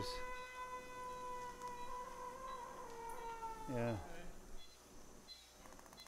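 A steady, high, pitched tone with overtones, held for about three and a half seconds and sagging slightly in pitch just before it stops.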